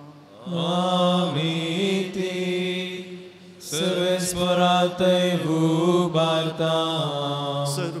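A priest's solo male voice chanting a sung Mass prayer into a microphone, in two long drawn-out phrases with a brief pause between them about three seconds in.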